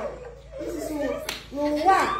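Voices laughing and calling out, with a couple of sharp hand claps.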